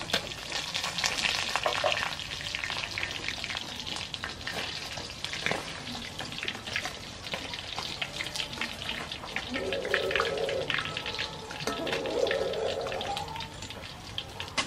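Pieces of fish frying in hot oil in a wok, sizzling and crackling steadily, with a metal spatula turning them against the pan. Two louder, lower-pitched sounds come in the second half.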